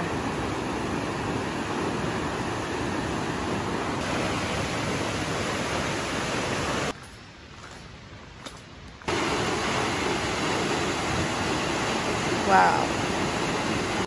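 Steady rushing of Catarata del Toro, a tall waterfall heard across a gorge. It breaks off into a much quieter stretch for about two seconds in the middle, then resumes.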